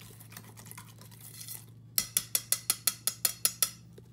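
Thick miso paste being stirred in a stainless steel bowl with a soft scraping. About halfway through come a dozen quick, even metallic clinks of the utensil against the bowl, about six a second, which stop shortly before the end.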